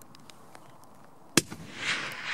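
A single hunting rifle shot, sharp and loud, about one and a half seconds in, fired at a red stag and hitting it, followed by a rising hiss.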